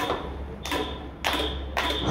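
Four short sharp clicks or taps, a little over half a second apart, over a low steady hum.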